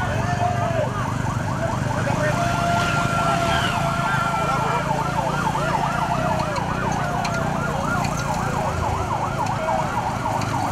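Several sirens yelping rapidly and overlapping throughout, with a steady held tone, like a horn, between about two and five seconds in, over a low vehicle rumble.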